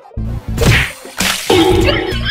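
A quick swish followed by a sharp whip-like crack, comedy sound effects laid over background music.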